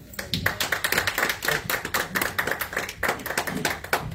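Congregation applauding: many hands clapping in a dense, steady patter that tails off at the very end.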